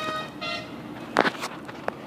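A vehicle horn toots twice, a long steady note and then a short one. About a second in come a few sharp clicks, the first the loudest.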